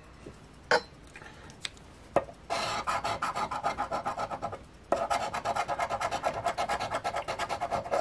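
A coin scraping the latex coating off a scratch-off lottery ticket in rapid back-and-forth strokes, about eight a second. After a couple of light taps, the scratching starts a couple of seconds in, pauses briefly just before the halfway point, and then goes on.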